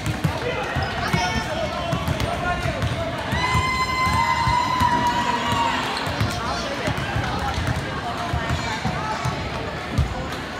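Several basketballs bouncing on a hardwood gym floor during layup warm-ups, an irregular run of thuds, with voices and chatter echoing in the gym. A steady high tone is held for a couple of seconds about three and a half seconds in.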